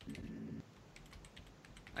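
Faint typing on a computer keyboard: a scattered run of light key clicks.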